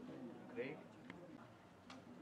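Faint, distant voices of people talking on a football pitch, with a couple of light ticks in the second half.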